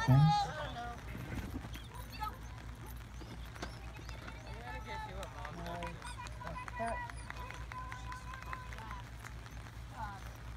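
Mostly voices: a loud called-out time right at the start, then shouted "go, go" and "get it" commands to a running dog, over a faint steady outdoor hum.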